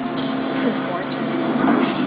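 Television programme sound picked up off the set's speaker: indistinct voices over a steady droning background.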